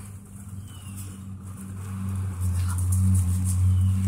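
A low droning hum that grows louder about halfway through and stays strong to the end.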